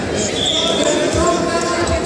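Spectators' voices and shouting echo in a large gym hall, with two dull thuds on the wrestling mat, about a second in and near the end, and a brief shrill sound about half a second in.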